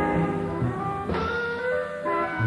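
Live jazz-rock instrumental from an audience cassette recording: electric guitar holding long melody notes over bass and keyboards, with a new note coming in about a second in.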